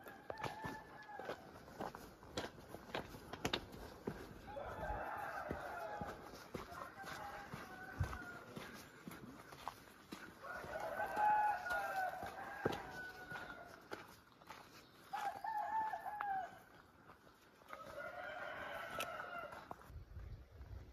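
Roosters crowing, about six long calls spread across the stretch, the loudest about halfway through, with the scattered clicks of footsteps on gravel.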